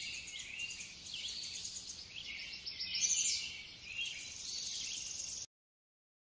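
Birds chirping with short, varied calls over a fast, steady high trill like insects, cutting off abruptly about five and a half seconds in.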